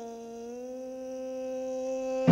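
A woman jazz singer's voice holding one long, steady note without accompaniment, slowly swelling in loudness.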